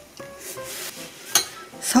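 Metal spoon scraping and clinking against a small ceramic bowl while spooning pomegranate syrup, with one sharp clink about one and a half seconds in. Soft background music plays throughout.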